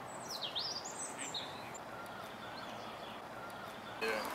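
A songbird singing a few quick swooping whistled phrases in the first second and a half, then fainter short chirps, over steady outdoor background noise.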